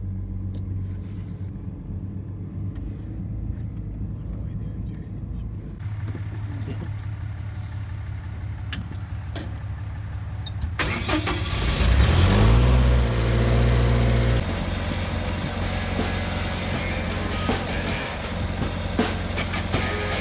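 Lincoln SAE-300 engine-driven welder starting up: about halfway through its engine catches and rises in pitch, runs loudest for about two seconds, then drops back to a lower steady run. Before that a vehicle engine hums low and steady, and background music comes in around the same time as the start.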